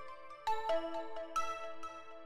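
Bell-like synth melody playing back in a loop: a few sustained single notes with ringing overtones, a new note coming in about half a second in and again near 1.4 seconds, with no drums.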